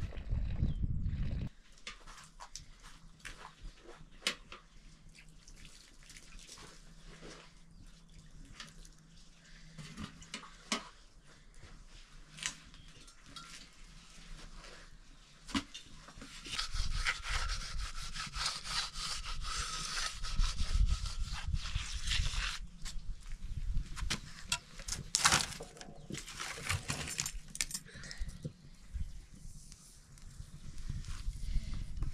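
Aluminium cooking pots and a pressure-cooker lid clinking, knocking and scraping as they are handled beside an open wood fire. Scattered sharp clinks are broken by several seconds of rough scraping noise in the middle and a few louder knocks near the end.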